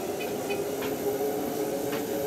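Motorised treadmill running at a walking pace, its motor and belt giving a steady hum.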